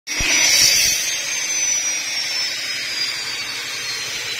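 A machine running, with a steady hiss and a thin high whine that slowly falls in pitch.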